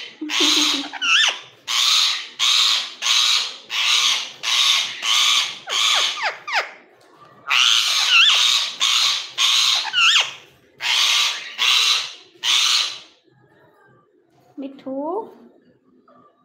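Indian ringneck parakeet giving a long run of short, harsh, hissing calls, about two a second, with a short pause near the middle; the calls stop a few seconds before the end, leaving a quieter stretch with one brief rising sound.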